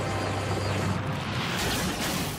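Cartoon power sound effect for spinning, glowing fists: a dense rushing, grinding noise over a low steady hum, swelling into a louder whoosh about one and a half seconds in.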